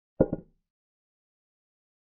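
Chess software's piece-move sound effect, a short wooden click of a knight capturing on the board, with two quick knocks close together just after the start.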